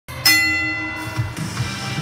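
A bell-like chime struck once about a quarter second in, many high tones ringing out and fading over the next second, over background music.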